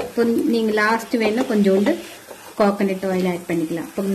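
A person's voice speaking in short phrases.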